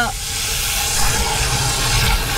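Water jetting from a garden hose spray nozzle into the opening of a motorhome waste water tank as it is flushed out, a steady hiss.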